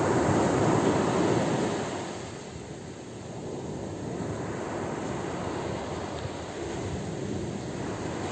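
Ocean surf washing onto the shore, a louder rush of surf in the first two seconds that eases into a steadier, quieter wash.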